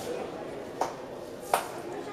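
Background murmur of voices in a large, echoing sports hall, with two sharp taps, one just under a second in and one about a second and a half in.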